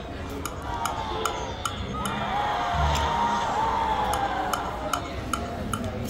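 Rich Little Piggies video slot machine spinning its reels: electronic game music with a gliding melody, punctuated by a steady series of sharp clicks about two to three a second.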